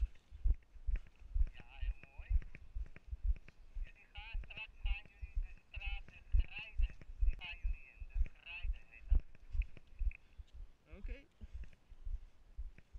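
Footsteps of a person walking briskly on brick pavement, heard as steady low thuds about two a second through a body-worn camera.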